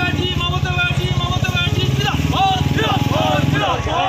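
Many voices of marchers shouting slogans at once, over a small engine running with a fast, even pulse that fades a little before the end.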